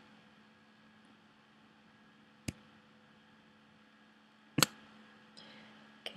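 Near silence: faint room tone, broken by one sharp single click about two and a half seconds in, and a short spoken "okay" near the end.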